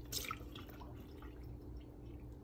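Water sloshing and dripping as pomegranates are turned and lifted in a bowl of water in a stainless steel sink: a small splash just after the start, then faint drips.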